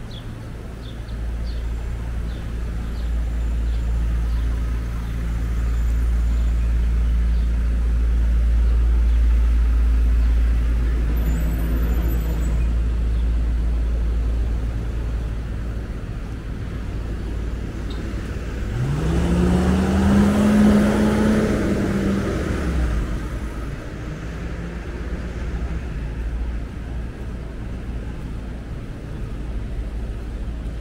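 City street traffic with a steady low rumble. About two-thirds of the way through, a box truck passes close by, its engine rising in pitch as it pulls away, the loudest sound here, then fading within a few seconds.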